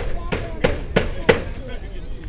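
Four sharp knocks in an even rhythm, about three a second, over faint crowd chatter.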